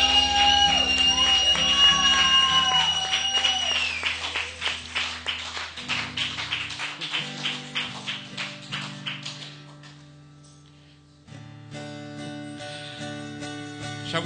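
Live worship band music: the final chord of a song is held for about four seconds. Strummed acoustic guitar follows and fades away, and after a brief lull a soft sustained keyboard chord comes in.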